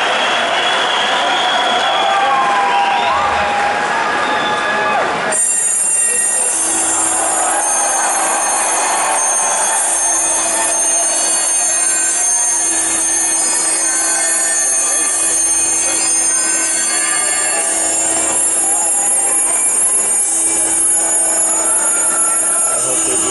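Concert crowd cheering and whistling. About five seconds in, this switches abruptly to a loud, sustained sound from the stage PA: steady high tones over a steady low drone, with no beat.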